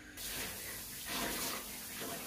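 Tap water running into a ceramic washbasin while an aquarium sponge filter is rinsed under it: a steady splashing hiss that starts abruptly just after the start.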